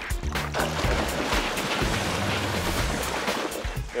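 Water splashing from a young swimmer's kicking legs in a pool, over background music.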